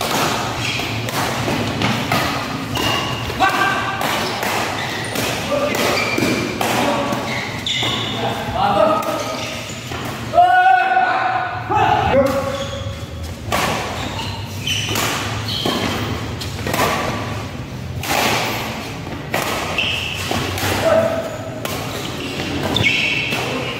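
Doubles badminton rally in a reverberant indoor hall: repeated sharp racket strikes on the shuttlecock and thuds of players' feet on the court, with players' voices calling out, loudest about ten seconds in.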